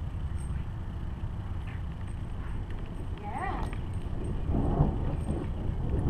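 Steady low rumble of wind on the microphone in a thunderstorm. About three seconds in, a short pitched call rises and then falls.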